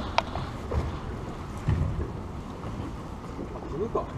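Low, uneven wind rumble on the microphone aboard a small boat, swelling a little under two seconds in, with a brief voice near the end.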